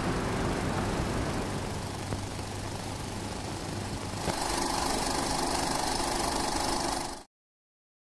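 A film projector running with a steady mechanical sound. About four seconds in, as the film runs out to a blank screen, it gets louder and hissier with a steady hum, then cuts off suddenly about seven seconds in.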